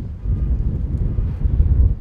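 Wind buffeting the microphone, an irregular low rumble.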